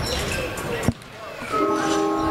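Basketballs bouncing on a hardwood gym floor during warm-up, with one sharp, loud thud just before the middle. Music with held notes comes in over the gym about three-quarters of the way through.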